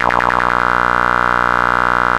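Modular synthesizer tone whose fast LFO flutter dies away in the first half second as the Erica Synths Black LFO's internal envelope decays to zero. What remains is a steady buzzy tone.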